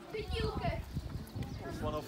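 Indistinct voices talking, over a run of light, irregular knocks from footsteps while walking across the grass and stepping stones.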